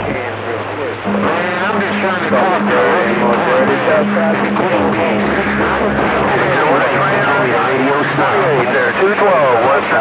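A distant station's voice coming in over a CB radio receiver, speech through the set's speaker as a strong incoming signal, with a steady low hum under it for about five seconds.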